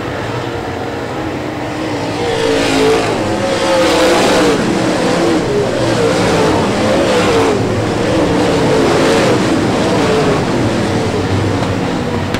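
Dirt super late model race cars' V8 engines running hard in a pack, their notes rising and falling as they go through the turns. The sound grows louder from about two seconds in.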